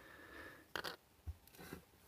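Faint handling noise at a workbench: a few soft, short clicks and rustles.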